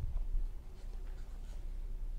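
Low, uneven rumble with faint scratchy rustling, picked up by a clip-on microphone in a quiet room.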